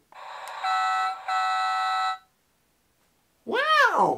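Electronic toy sound effect: a hissy rise, then a steady buzzing tone for about a second and a half with a brief break, cutting off about two seconds in. A woman's short exclamation follows near the end.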